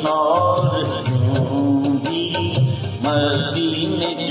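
A man singing a Hindi song into a microphone over a karaoke backing track with a steady drum beat.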